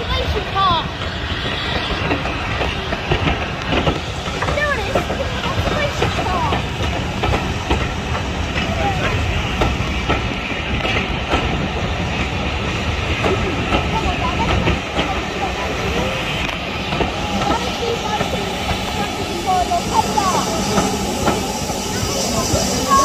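Passenger coaches of a steam-hauled train rolling past on the track with a steady rumble, over which a crowd of onlookers calls and chatters.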